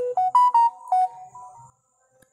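A short electronic melody of clear beeping notes from a phone, stepping up and down in pitch for about a second and a half, then stopping.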